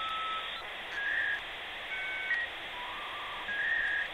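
Outro logo sound effect: a string of short, whistle-like electronic tones that jump between pitches over a steady hiss.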